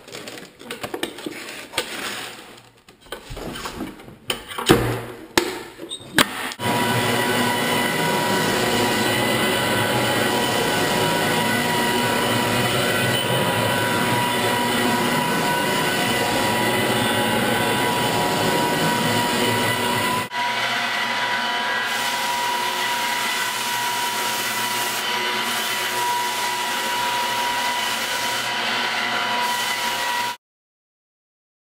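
Knocking and clatter as a fresh 100-grit sanding sheet is fitted and clamped onto a drum floor sander, then about six seconds in the drum floor sander starts and runs steadily with a high whine as it sands the wooden floor. About two-thirds of the way through the sound changes abruptly to a similar steady sanding-machine sound with less low rumble.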